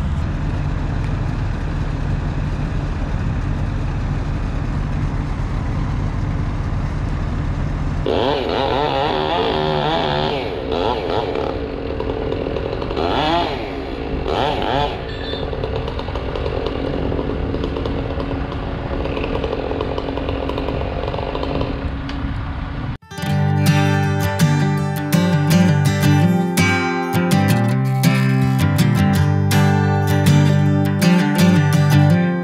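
Chainsaw with a modified muffler running steadily, then, after a cut about eight seconds in, revved up and down several times. About 23 seconds in, the sound cuts to strummed acoustic guitar music.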